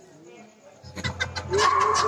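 A person's voice over the stage loudspeakers, with a low steady hum and a few clicks coming in about a second in, then a loud wavering vocal sound.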